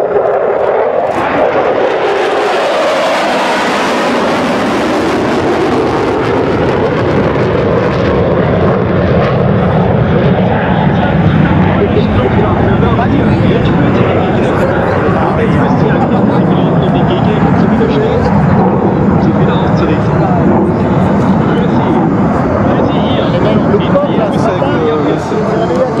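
Jet engine noise from a pair of Sukhoi Su-22 fighter-bombers flying a display pass. A loud, continuous rumble swells with a sharp hiss for a few seconds early on as the jets pass, then stays loud throughout.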